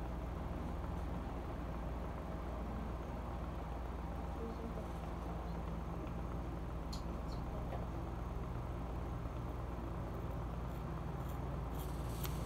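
Steady low background rumble, with two faint sharp snips of scissors cutting hair about seven seconds in.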